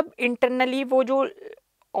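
Speech: a person talking in long, level-pitched syllables, breaking off into a short silence about a second and a half in.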